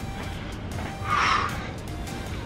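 Background music, with one short, sharp breath out about a second in during a bodyweight lateral lunge.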